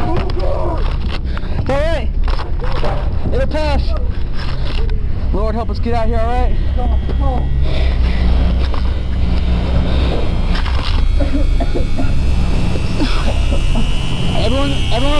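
Voices with no words the recogniser could make out, over a loud steady low rumble; about halfway through a thin high steady tone comes in and slowly rises a little.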